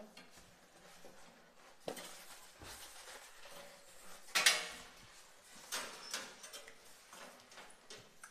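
Metal wire rack of an electric toaster oven being slid and knocked in its side rails, with scattered metallic clicks and scrapes; the loudest clatter comes a little past halfway, with another shortly after.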